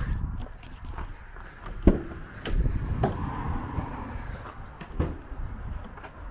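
Footsteps on gravel, then the rear door of a VW Transporter van being unlatched with a sharp click about two seconds in and swung open, with a few smaller knocks after.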